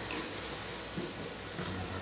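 Quiet room tone: a low, steady hiss with no clear event.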